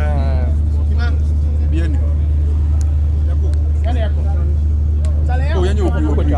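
A steady, loud low hum throughout, with brief stretches of men's talk over it near the start, about four seconds in and near the end.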